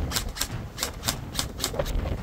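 G&G TR80 airsoft electric DMR firing a quick series of single shots, about six or seven sharp cracks in under two seconds, unevenly spaced.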